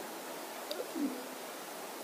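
Steady low hiss of a courtroom microphone and room tone, with a faint short hum, like a man's voice starting a sound, about a second in.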